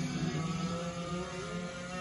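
Several go-kart engines running together as a pack, rising in pitch as they accelerate, heard played back through a screen's speaker.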